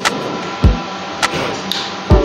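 Brewed coffee pouring from a glass carafe into a ceramic cup, a steady splashing stream, with a couple of sharp clinks. Background music with a deep beat underneath.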